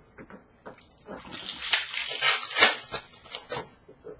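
Crinkling and rustling of a trading-card pack wrapper and cards being handled: a few small clicks, then a dense crinkly rustle from about a second in, dying away near the end.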